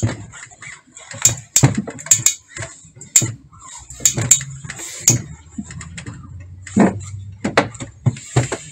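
Fabric and objects being handled on a worktable: irregular sharp knocks, taps and rustles.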